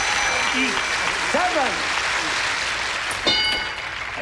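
Studio audience applauding, with scattered shouts. Near the end comes a short bell-like ding as a hidden answer flips over on the Family Feud game board.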